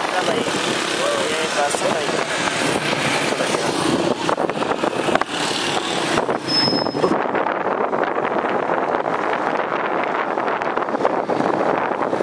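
Wind rushing over the microphone and road traffic noise while riding through city streets, with voices in the mix and a brief high tone about six and a half seconds in.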